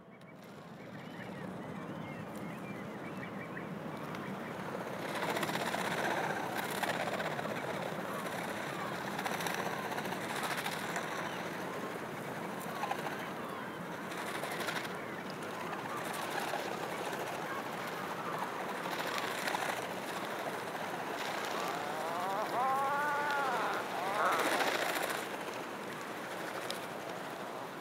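Outdoor ambience of birds calling over a steady background hiss, fading in over the first couple of seconds. Near the end comes a cluster of arching calls that rise and fall.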